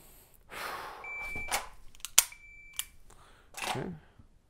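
Shot timer's start beep, then a single sharp dry-fire click from an unloaded pistol, followed straight away by the timer's par beep, set 1.25 seconds after the start beep. A breathy rush of noise comes just before the first beep.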